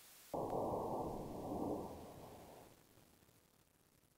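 An aerosol can blown open by a .22 bullet: a sudden, muffled rushing burst about a third of a second in, fading away over the next two seconds or so.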